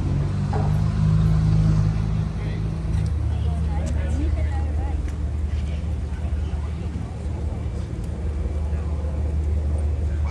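Motor yacht's engines idling at the quay, a steady low drone whose pitch shifts about three seconds in. Faint voices of people nearby are heard over it.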